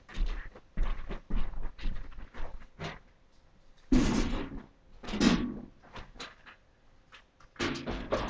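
A run of irregular knocks, clicks and thuds, with two louder clattering bangs about four and five seconds in, like doors or latches being worked.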